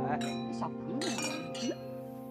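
Drinking glasses clinking together in a toast, once near the start and again about a second in, each with a brief bright ring.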